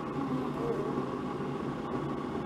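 Keurig coffee maker heating water, a steady low hum. A faint voice is heard early on.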